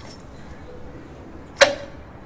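A single sharp clink of kitchenware at a steel sink about one and a half seconds in, ringing briefly, over a faint steady hiss.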